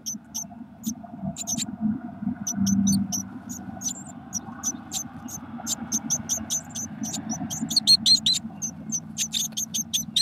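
Blue tit nestlings cheeping: short high-pitched begging calls, scattered at first and coming thick and fast from about seven seconds in, over a steady low rumble.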